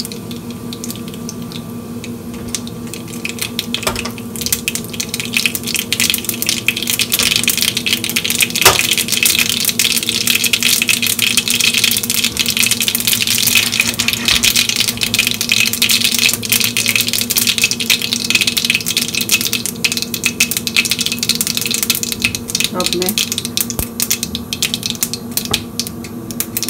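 Mustard seeds crackling and popping in hot oil in a small stainless steel pan while a tadka is tempered. The spluttering starts thin, grows dense a few seconds in and keeps up as a steady crackle, the sign that the oil is hot enough for the seeds to burst.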